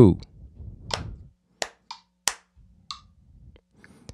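Hand claps playing quarter-note triplets against a counted beat: three evenly spaced sharp claps about two-thirds of a second apart, with fainter clicks between and after them.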